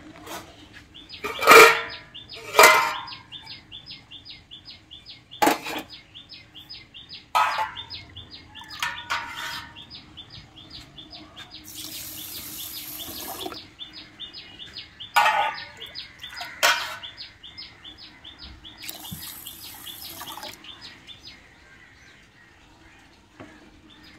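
Steel kitchen vessels knock and clank several times, and water is poured onto rice in a steel pot twice, once around the middle and again near the end. Behind it a bird chirps steadily, about two or three short calls a second.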